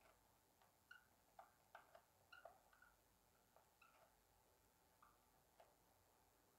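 Faint squeaks and light taps of a felt-tip marker writing on paper, most of them in a cluster about one to two and a half seconds in, with a few more later.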